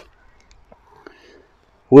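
A quiet pause holding only a faint murmur, like someone whispering under their breath, and a couple of tiny clicks. A woman's voice starts up again right at the end.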